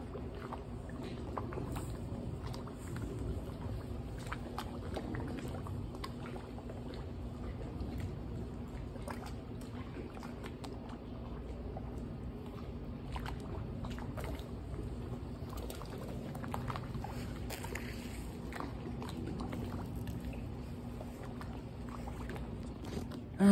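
Water sloshing and lapping in a swimming pool, with small splashes and drips, over a steady low hum.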